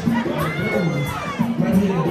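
Dance music with a steady beat and bass line, with a crowd shouting and cheering over it near the middle.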